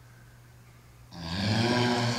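A man's loud, breathy vocal exhale of effort as he punches a dumbbell upward, starting about a second in over a low steady hum.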